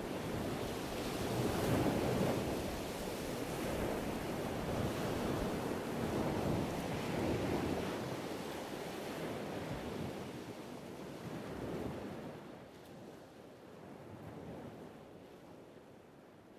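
Ocean surf breaking on a beach, a steady wash of waves that swells and eases and fades down over the last few seconds.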